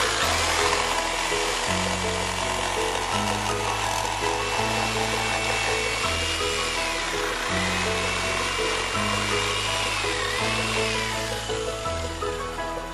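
JCB 710W electric jigsaw cutting the outline of a wooden spoon blank from a board, its motor whine dipping twice as it works through the curve and trailing off near the end, over background music.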